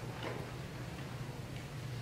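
Quiet hall with a steady low hum and a few faint, scattered taps: the footsteps of a person walking past.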